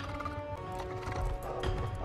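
Several heavy, low footfalls from a large furry howler mount stepping on a stone floor, under a sustained music score.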